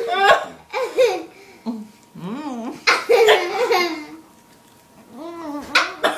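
Laughter in several bursts, with a short lull about four seconds in before it picks up again.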